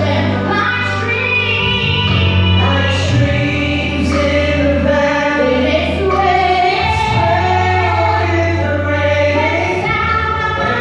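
A woman singing a gospel praise-and-worship song into a microphone, over accompaniment with a sustained low bass underneath.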